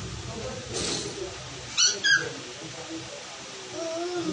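A young child's two short, high-pitched squeals in quick succession about two seconds in, during energetic play.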